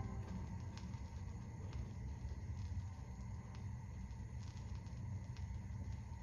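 Vinyl LP surface noise in the silent groove between tracks: scattered clicks and pops over a low steady rumble from the turntable.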